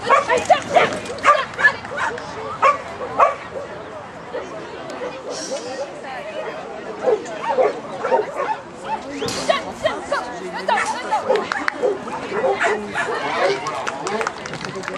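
A dog barking in short, sharp barks, about seven in quick succession over the first three seconds, then quieter, scattered sounds mixed with voices.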